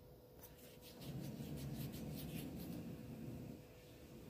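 Faint handling noise: fingers rubbing and a run of light scratchy ticks over about two seconds as a small sterling silver pendant is turned over in the hand.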